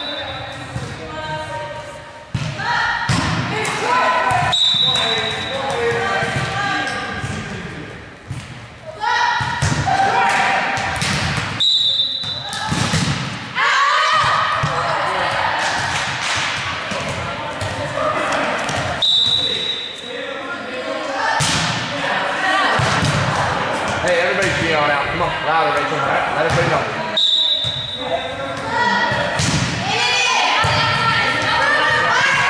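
Volleyball drill in a gym hall: sharp slaps of the ball being passed and hit, among indistinct, echoing talk and calls from players and coach. A short high-pitched tone recurs several times.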